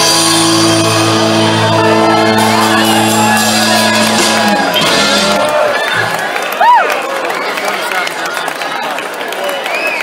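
Live rock band's final chord ringing out and dying away about five seconds in, followed by audience cheering and whooping, with one loud whoop near seven seconds.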